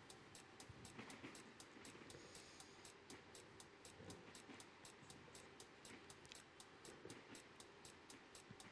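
Faint game-show countdown ticking, about four quick high ticks a second, over a quiet tension music bed while the answer clock runs down.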